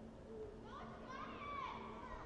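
Faint, high-pitched voice calling out, starting a little under a second in and gliding in pitch, over a low steady hum.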